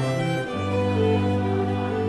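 String quartet playing a slow passage of held, bowed chords, a low note sustained beneath the violins; the chord changes about half a second in.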